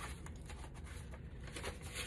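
Sheets of cardstock and paper being handled and moved about: a few faint rustles and soft taps.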